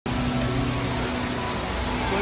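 Steady rushing noise of a large indoor waterfall, with a faint low hum in the first second.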